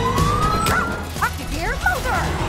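Trailer soundtrack with background music: a rising whistle-like tone through the first second, then a cartoon puppy's quick yips in the second half.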